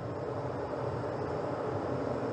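Steady rushing noise of a Falcon 9 rocket venting vapour on the launch pad in the last seconds before liftoff.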